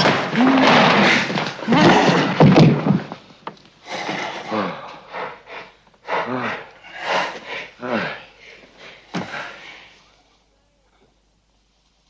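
A man's strangled, choking vocal sounds: gasps and grunting cries as he is throttled, dense and loud at first, then breaking into separate short cries that die away about ten seconds in.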